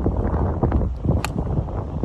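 Wind buffeting the phone microphone, with a single sharp click a little past a second in as a golf club strikes the ball on a full fairway swing.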